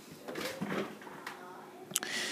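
A man's faint, mumbled voice, then a sharp click just before the end.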